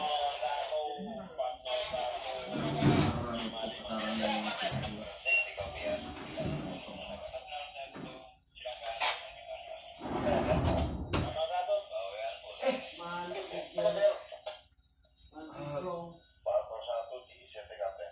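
Thin, narrow-band voices over a ship's two-way radio, talking in short stretches with pauses, during berthing. Low rumbles come in about three seconds in and again near the middle.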